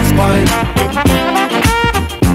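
1970s funk music: a brass horn section playing over a steady drum beat and bass.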